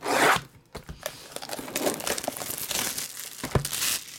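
Cellophane shrink wrap on a box of trading cards being slit open with a knife: a loud rasp right at the start, then the plastic crinkling and tearing as it is pulled off, with a sharp tap near the end.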